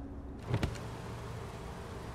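Car cabin ambience: a steady low hum, with a short knock about half a second in, followed by the electric window motor humming briefly as the driver's window lowers.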